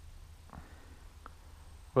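Quiet pause in the outdoor background: a faint steady low rumble, with a soft blip about half a second in and a small tick a little past a second in.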